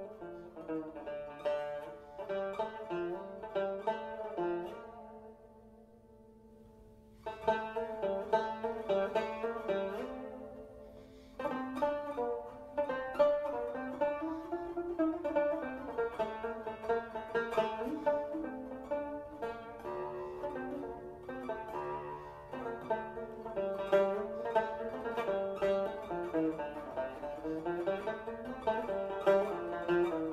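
Solo Turkish tanbur, a long-necked fretted lute with a large round bowl, played with a plectrum as a run of plucked melodic notes. A few seconds in, the playing stops and the notes ring away almost to silence. It resumes, thins again briefly, and then runs on unbroken.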